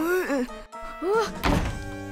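A cartoon character's voice crying out in short rising-and-falling wails, then a thunk about one and a half seconds in, with music underneath.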